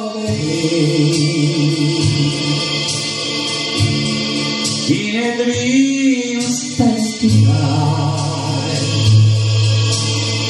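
A man singing a slow romantic ballad into a microphone, holding long notes over a recorded musical accompaniment.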